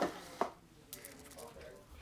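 Handling noise from picking up a pair of screwdrivers out of their plastic case: one sharp click about half a second in, then faint tapping and rustling.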